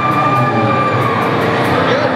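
Low, steady droning rumble from the band's amplified instruments as they get ready to play, with a long high held tone over its first part.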